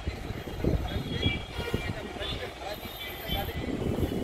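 Outdoor ambience: an uneven low rumble of wind on the microphone, with distant town traffic and faint background voices.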